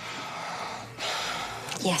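A woman's audible breath out, a short breathy exhale lasting about half a second, starting about a second in.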